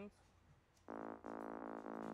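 Sawtooth synth bass from Ableton's Operator playing short repeated notes on one pitch, starting about a second in. Its low end is cut away by a high-pass EQ, so it sits in the mids without sub-bass.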